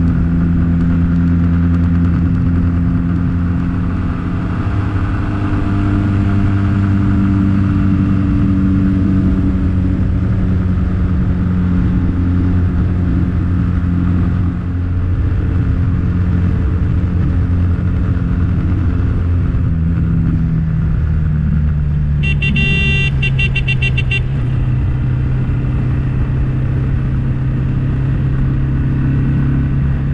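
Motorcycle engine running steadily at road speed, heard from on board the bike. Its note drops a little about two-thirds of the way through as it slows. A vehicle horn sounds for about two seconds about three-quarters of the way in, and again at the very end.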